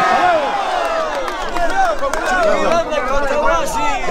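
A dense crowd at close range, many people talking and calling out over each other at once.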